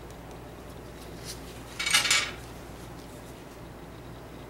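A brief clatter of small hard objects about two seconds in, lasting about half a second, as seashells are handled and knock together, with a few faint ticks around it.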